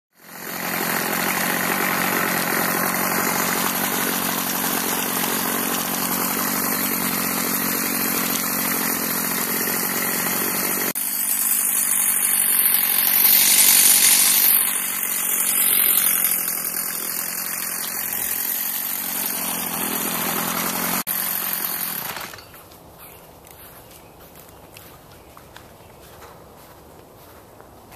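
Small petrol lawn-care engines running at high speed across several edits, among them a Stihl string trimmer whose engine is loudest about 13 to 14 seconds in. The engine noise stops abruptly about 22 seconds in.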